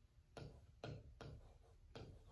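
Faint, irregularly spaced taps of a pen touching down on an interactive touchscreen display as words are handwritten on it, a few taps in two seconds.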